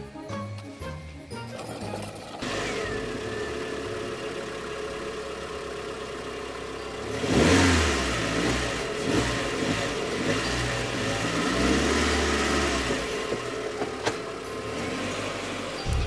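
Battery-powered ride-on toy car running along a concrete path: a steady mechanical hum that starts about two and a half seconds in and swells briefly around the middle.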